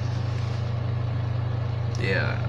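A steady low hum with a constant hiss over it, unchanging throughout.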